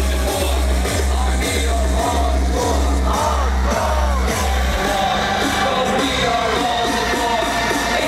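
Hardcore gabber dance music played loud over a festival sound system, its heavy distorted kick drum pounding in an even beat and then dropping out a little past halfway. Crowd shouting and singing along over the music.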